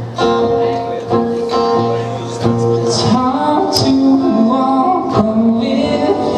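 Live acoustic guitar strummed steadily under singing with long held notes: an indie-folk song played by a duo.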